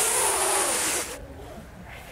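A deep breath drawn in, an airy hiss close to the microphone that stops about a second in.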